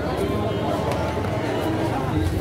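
Indistinct chatter of several people talking in the background.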